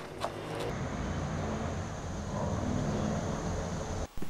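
Steady low background rumble with a thin, faint high whine above it, rising slightly in level in the second half, and a single soft click shortly before it settles in.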